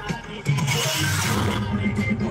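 Loud DJ music from a rally sound system of stacked speakers, with a heavy pulsing bass beat. The music dips briefly just after the start and then comes back in at full volume.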